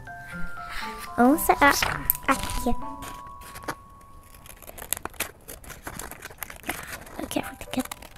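Small craft scissors snipping paper, a run of short sharp clicks through the second half, over background music with held notes. A child's voice is heard briefly about a second in.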